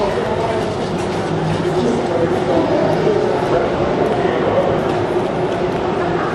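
Indistinct voices over a steady rumble of shop-floor background noise.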